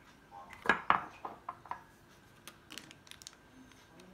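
Metal tongs clinking against a ceramic dish: two loud clinks about a second in, then a string of lighter clicks and taps.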